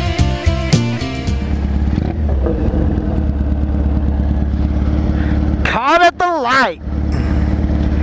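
Electric guitar and drum title music ends in the first second or two. Then a motorcycle engine idles with a steady low hum, and a brief voice cuts in about six seconds in.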